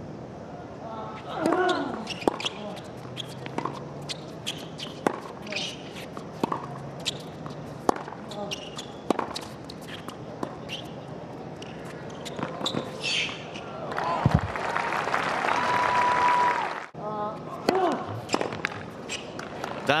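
Tennis rally on a hard court: a serve and then racket strikes on the ball, about one every second or so, with ball bounces and short player grunts on some shots. About fourteen seconds in the crowd applauds and cheers the end of the point, then the sound cuts to another point with more strikes.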